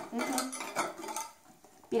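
Metal wire whisk clinking against a glass bowl as eggs and sugar are beaten together: a quick, uneven run of clinks that fades about a second and a half in.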